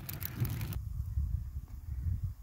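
Fire crackling as vine prunings and wood burn in a rusty metal burn barrel, over a low rumble. The crackling cuts off abruptly under a second in, leaving only the low rumble.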